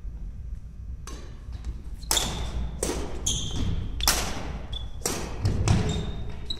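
Badminton doubles rally: racket strings striking the shuttlecock about once a second, with short sneaker squeaks and thuds of players' feet on the wooden court floor.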